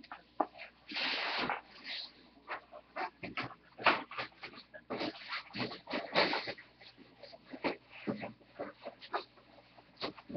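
Foil trading-card pack wrappers crinkling and rustling as they are gathered up, with a longer crinkle about a second in and scattered short crackles and taps after.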